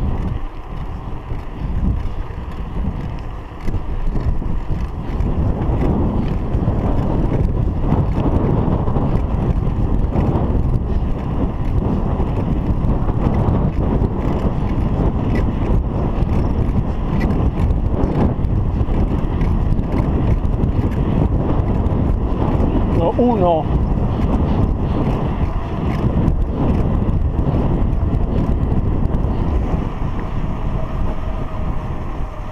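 Wind buffeting a chest-mounted action camera's microphone while riding a bicycle on a paved road: a steady, loud, low rumble that dips briefly in the first few seconds. A short wavering sound comes about three-quarters of the way through.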